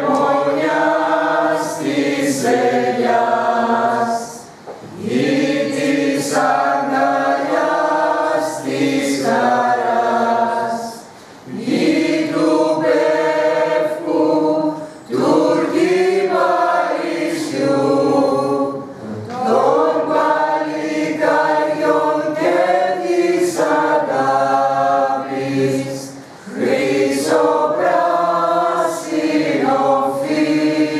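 A small mixed choir of men and women singing together from song sheets. The song runs in long phrases, broken by brief pauses for breath every few seconds.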